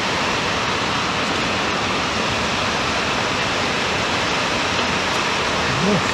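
Steady heavy rain, an even unbroken hiss.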